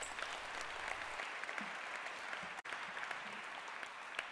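Audience applauding steadily, many hands clapping at once, with a momentary break a little past halfway.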